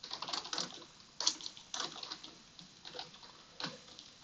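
Computer keyboard typing: a run of irregular keystroke clicks, some stronger than others.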